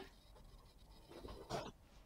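Near silence, with a faint, brief rustle about a second and a half in.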